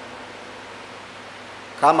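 A pause in a man's speech at a microphone, holding only a low steady hiss of room noise; his voice comes back near the end.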